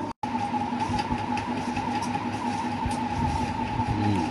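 Continuous hissing with a steady high-pitched whine in it: electrical noise in the recording, which the owner blames on his modified microphone and means to have repaired. A few faint low thumps sit under it.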